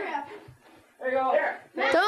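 Only speech: the live wrestling commentator's voice in short, broken phrases, with a brief pause about half a second in.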